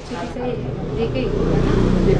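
People talking over one another, with a low rumble building up in the second half.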